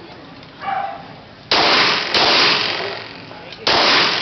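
Three loud pistol shots, the first about a second and a half in, the next half a second later and the last near the end, each trailing off slowly in the walled range.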